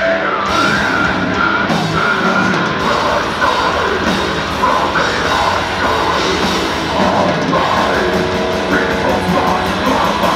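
Slam death metal band playing live: distorted down-tuned guitars, bass and drums, with harsh growled vocals.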